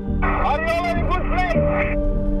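A rider's voice over a two-way race radio, thin and narrow-band, saying he is in a good position, heard in a moving car over background music and low cabin rumble.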